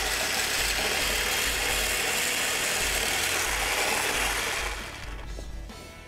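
Electric stick blender with a whisk attachment whipping egg whites in a bowl to stiff peaks (clara em neve). It makes a steady whirring hiss that winds down and stops about five seconds in.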